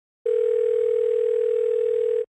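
A steady telephone line tone, one even pitch, starting a moment in and holding for about two seconds as a call is placed.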